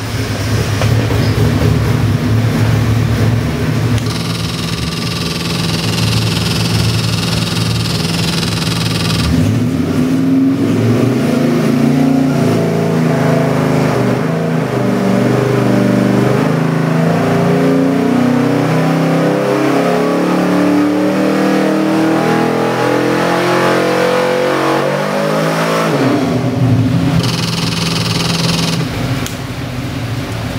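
Ford 351 Windsor-based 408 cubic-inch stroker V8 on an engine dyno, idling, then pulled under load with its pitch rising steadily for about sixteen seconds before dropping back to idle near the end.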